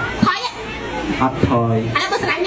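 Fast, animated speech in Khmer from comedy performers.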